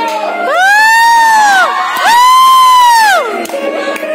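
Audience cheering at a stage dance, with two loud high-pitched whoops one after the other, each rising and then falling in pitch, over dance music.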